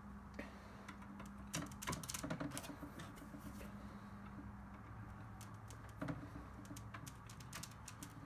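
Faint scattered clicks and taps as a chronograph's sunscreen is fitted onto its thin support rods, with the clicks coming more often near the end, over a low steady hum.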